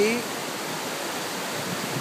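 River water rushing over rocks in shallow rapids: a steady, even rush.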